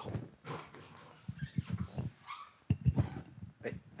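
Faint voices speaking away from the microphone in a room, with a few knocks and bumps of handling noise.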